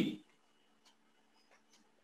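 A man's voice trails off, then near silence with a few faint, short clicks.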